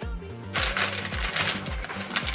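Background music with a steady beat, joined from about half a second in by the crinkling of a paper burger wrapper being unwrapped.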